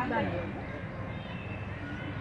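A person's voice falling steeply in pitch in the first half second, over a low steady hum and faint background voices.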